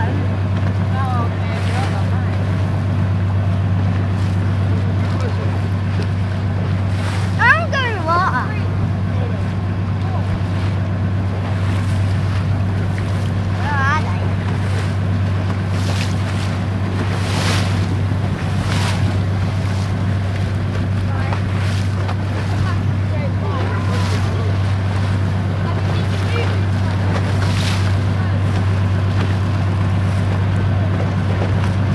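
Speedboat engine idling with a steady low hum while water laps and splashes against the hull, with wind on the microphone. A few brief high-pitched cries break in, the loudest about seven and a half seconds in.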